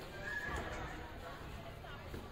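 Indistinct voices in a gymnasium, with a short high-pitched falling sound near the start.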